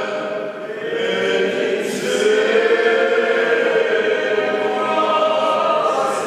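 A small male vocal group singing sacred Corsican polyphony a cappella, the voices holding long, slowly moving chords together.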